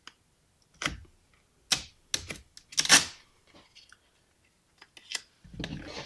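Brushed-steel vinyl wrap film crinkling and crackling as it is handled and stretched around a trim corner: a series of short, separate crackles with quiet gaps between them.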